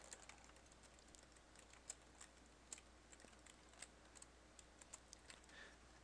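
Faint computer keyboard typing: scattered single keystrokes at an uneven pace.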